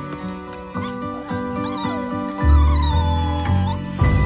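A puppy whimpering in high, wavering cries over soft orchestral music: two short cries, then one long drawn-out whine that slides down and holds near the end. A deep bass note enters under the music about halfway through.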